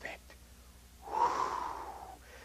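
A man's audible breath, a single rush of air lasting about a second, starting about a second in, as a speaker takes a breath between sentences.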